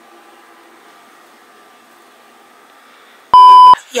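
Faint steady room hum, then near the end one short, very loud, steady electronic beep lasting under half a second.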